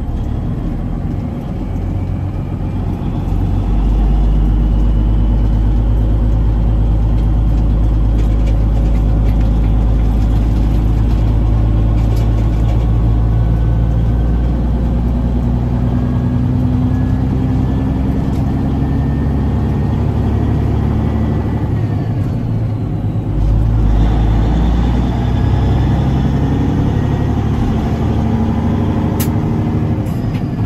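A semi truck's diesel engine heard from inside the cab while driving, a steady low rumble. Its note climbs as the truck pulls, breaks off at a gear change a little past two-thirds of the way through, then pulls again.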